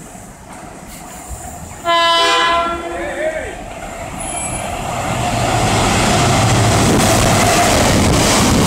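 Freightliner Class 70 diesel locomotive sounding one short horn blast about two seconds in. Then the locomotive and its train of cement tank wagons pass by, the rumble building steadily and holding loud near the end.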